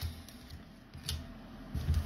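A few soft knocks and a brief click as hands pick up a sealed foil Magic: The Gathering booster pack from the table.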